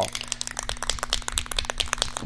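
Rust-Oleum metallic spray paint can being shaken by hand, its mixing ball rattling rapidly inside the can.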